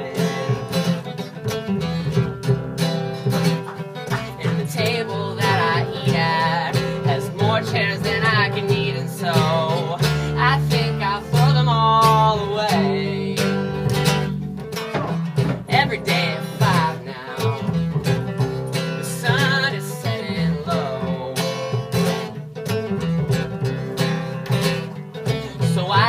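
Acoustic guitar and upright double bass playing an indie-folk song live, the guitar strummed over a plucked bass line.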